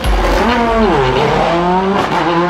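Race car engine sound effect starting suddenly and loud; its pitch drops about a second in, then climbs steadily again as it revs up.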